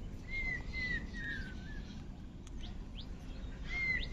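A bird calling: a run of about five short notes at one pitch, each dipping slightly, then two brief high chirps and one more note near the end.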